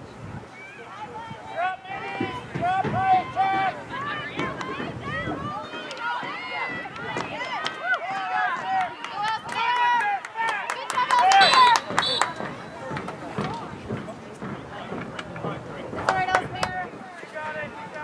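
Many high-pitched girls' voices shouting and calling out over one another across the field, with the loudest calls a bit past the middle and another short burst near the end. A few sharp clicks are mixed in with the loudest calls.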